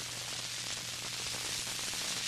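Steady hiss and static of a 1938 radio broadcast recording, with a low hum underneath.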